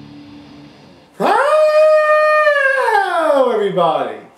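A man's voice giving one long howl-like call: it jumps up to a high held note about a second in, holds it for about a second, then slides steadily down in pitch. The tail end of the guitar music fades out before it.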